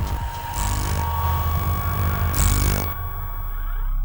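Outro sound effect with no beat: a loud, steady low rumble under a faint steady high tone, with two swells of hissing noise, one about half a second in and one about two and a half seconds in.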